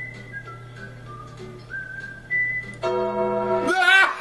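A person whistling a short, wandering tune, one clear note at a time. About three seconds in a loud, buzzy held note cuts in, breaking into a wavering cry at the end.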